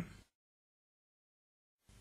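Near silence: a dead-quiet gap, with the tail of a spoken word fading out in the first instant.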